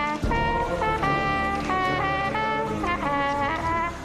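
Trumpet played solo: a short march tune of separate notes, some held, with some notes misblown.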